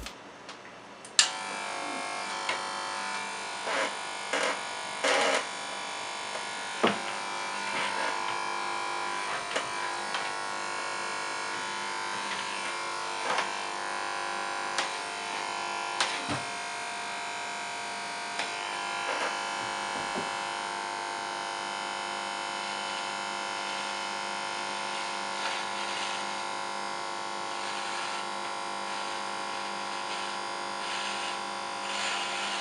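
Cordless electric hair clipper switched on with a click about a second in, then running with a steady buzzing hum as it is run over the head, cutting hair. A few short handling knocks over the first third.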